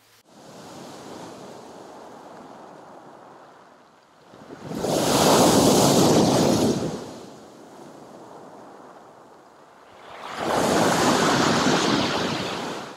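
Sea waves washing onto a pebble beach and breaking against a concrete pier. Two big waves crash, about four and a half and ten seconds in, with a quieter wash between them.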